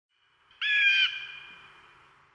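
A single high, squawk-like call, held steady for about half a second from about half a second in, then trailing off in an echo: a sampled sound effect opening a hip hop track.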